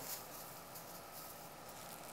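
Quiet room tone with no distinct sound; any sprinkle of dried herbs into the blender jar is too faint to stand out.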